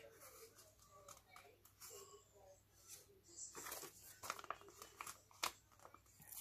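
Faint rustling and crinkling of paper sticker sheets being handled and folded, with a few sharper crackles in the second half.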